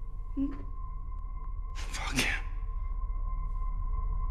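Horror-film soundtrack drone: a low rumble under steady, held high tones. It is broken by a short vocal sound about half a second in and a brief rushing swell about two seconds in.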